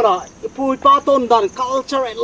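A man talking, with a steady high-pitched drone of insects behind.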